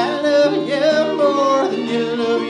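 An acoustic Americana string trio plays live: acoustic guitar, mandolin and fiddle, with a voice singing a melody line that bends in pitch.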